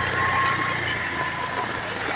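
Heavy rain pouring down on a road, a steady hiss, with a vehicle's engine running nearby that fades away in the first second.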